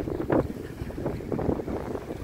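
Strong wind buffeting the microphone on a small open boat in choppy sea, a rough, gusting rumble with a brief louder surge near the start.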